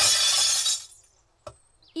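Cartoon sound effect of glass bottles tipped into a bottle bank, crashing and clinking together and dying away about a second in.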